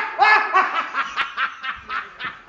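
One person laughing loudly in a high voice: a strong burst that breaks into a quick run of shorter laughs, fading.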